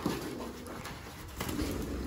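Quiet handling of a pigeon being lifted out of a cardboard box and passed from hand to hand, with a light knock at the start and another about one and a half seconds in.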